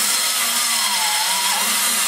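Pneumatic die grinder running steadily while cutting into the exhaust port of a cast-iron small-block Chevy cylinder head, its whine wavering slightly in pitch as the bit loads in the cut.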